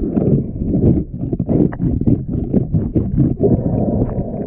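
Muffled underwater scraping and knocking as a hand scraper works along a fouled catamaran hull bottom, heard through a head-mounted camera. The strokes come irregularly, about four a second, over a low rumble of water.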